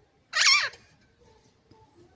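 An Alexandrine parakeet gives a single short, loud squawk with a wavering pitch that drops at the end.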